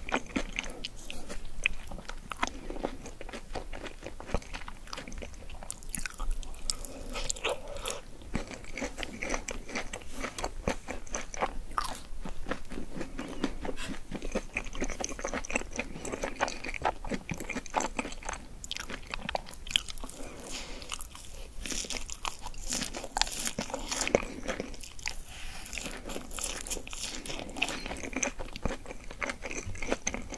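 Close-miked biting and chewing of crunchy breaded fried food eaten from a skewer: a steady run of crisp crunches and crackles, without pause.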